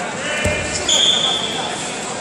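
A referee's whistle blows once, a steady shrill tone lasting nearly a second, shortly after a dull thump. Voices carry in the background of a large hall.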